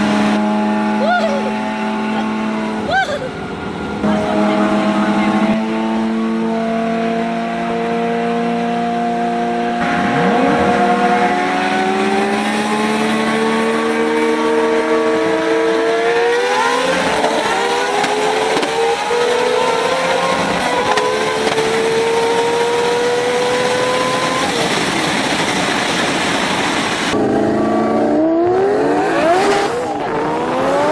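High-performance car engines at full throttle in a street race, heard from inside a pursuing car's cabin: the engine note holds steady at first, then climbs hard, drops at a gear change and climbs again.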